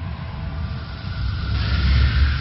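Cinematic intro sound effect: a deep, steady rumble, with a hissing whoosh that swells about one and a half seconds in.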